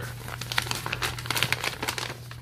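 Packaging crinkling as it is handled: a dense run of small crackles, over a steady low hum.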